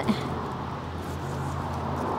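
Steady outdoor background noise: an even hiss with a low, steady hum underneath.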